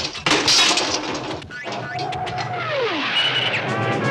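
Cartoon sound effects of a robot cat breaking apart: a burst of crashing, clattering impacts through the first second and a half, then a held tone that slides down in pitch, like a machine winding down.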